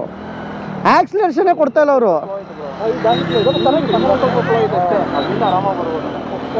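A motor vehicle's engine running with a steady low hum, under men's voices: one loud voice about a second in, then several talking over each other.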